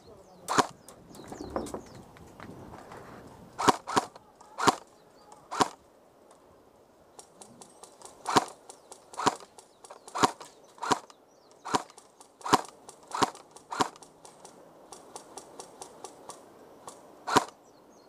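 M4-style airsoft rifle firing single shots: about fifteen sharp cracks at irregular intervals, with fainter clicks between them in the middle stretch.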